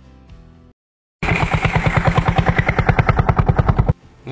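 Small single-cylinder diesel engine on a homemade motorized shopping cart, running with a rapid, even beat of about eleven pulses a second. It starts abruptly about a second in, after faint music and a short silence, and stops just before the end.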